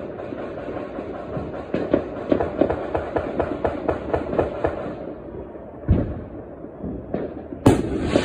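Fireworks and firecrackers going off, many irregular sharp cracks with a dense rapid run of pops in the middle. A heavier boom comes about six seconds in, and the loudest bang comes just before the end.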